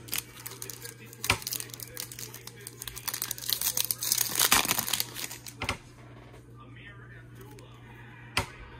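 Foil wrapper of a Topps Platinum Anniversary baseball card pack crinkling and tearing as it is pulled open by hand, densest about three to five seconds in and stopping about six seconds in.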